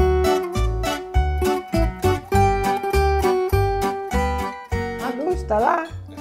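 Background music with plucked strings over a steady, regular beat.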